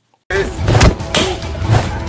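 A brief cut to silence, then a rough outdoor phone recording begins: a steady low rumble with several thuds and a short laugh.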